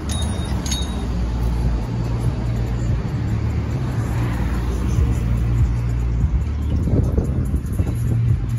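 Street traffic with a vehicle engine running close by, a steady low rumble.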